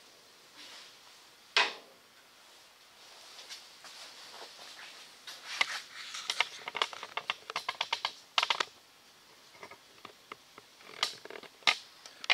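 Handling noise: a sharp click about one and a half seconds in, then a fast run of clicks and light knocks from about five to nine seconds in, and two more clicks near the end.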